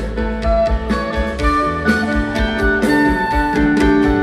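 A rock band playing live: electric guitars, bass guitar and drum kit, with a steady drum beat under sustained guitar notes.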